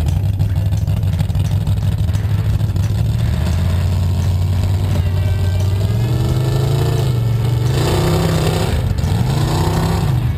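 Off-road mud trucks' engines running with a steady low drone, then revving up with rising pitch over the last few seconds.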